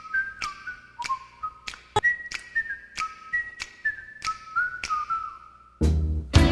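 A tune whistled as one clear melody line, stepping between notes, over a sparse clicking beat. Right at the end a full band with guitar comes in loudly.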